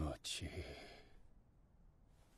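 The tail of a man's voice speaking a line of Japanese anime dialogue, followed by a faint breathy exhale that dies away within the first second, then near silence.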